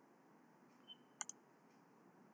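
Near silence, with two faint clicks in quick succession a little past the middle.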